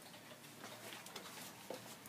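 Faint light clicks and ticks, irregularly spaced, over quiet room tone.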